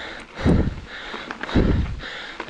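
Mountain bike rolling down a loose gravel track, with steady tyre and gravel noise and two low rumbles about a second apart.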